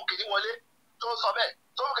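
A voice speaking in short phrases with brief pauses, thin-sounding as over a telephone line.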